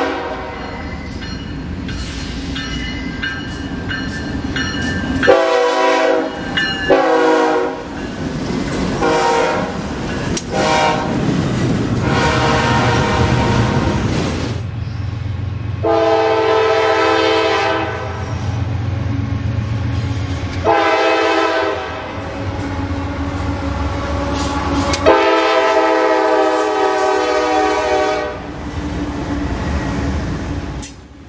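Freight train diesel locomotives sounding their air horns in a series of blasts, several short ones and then long held chords, over the low rumble of the locomotives and cars rolling by on the rails.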